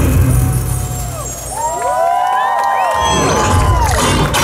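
A nighttime water-and-fireworks show's soundtrack music plays loudly over a deep low rumble that drops away about a second in and comes back near the end. Over the last two seconds many overlapping whistles sound, each rising and then falling in pitch.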